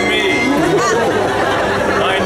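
Crowd chatter: several people talking at once, the voices overlapping without any one standing out.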